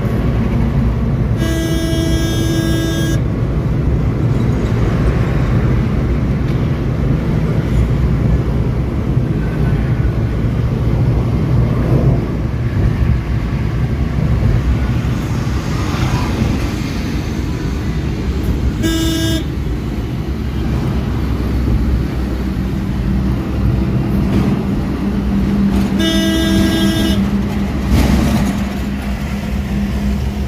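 Steady engine and road noise inside a Maruti Suzuki Eeco's cabin at highway speed, with a horn honking three times: a long blast about a second and a half in, a short toot a little past the middle, and another blast about four seconds before the end.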